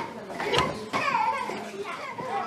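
Young children's voices chattering in the background of a room, with a brief knock about half a second in.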